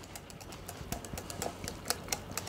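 Metal whisk clicking and scraping against a glass mixing bowl while stirring a thick sour-cream sauce: a run of irregular light clicks, with one louder click near the end.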